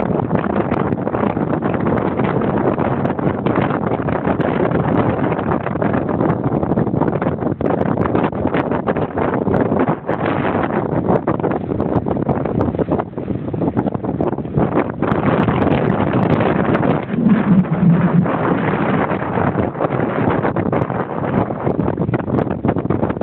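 Strong wind blowing across the camera's microphone: a loud, unsteady rush of noise that swells in gusts, strongest in the last third.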